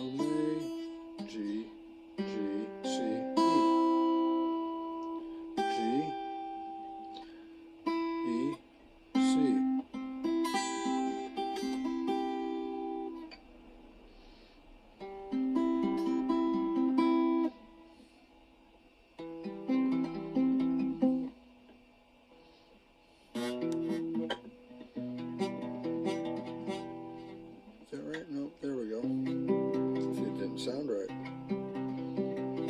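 Guitar notes picked singly and in pairs, working through the notes of a C major triad (C, E, G) in short phrases separated by brief pauses.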